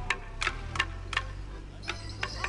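Wooden morris sticks clashing together in a border morris dance: four sharp, evenly spaced clacks, about three a second, in the first second and a half.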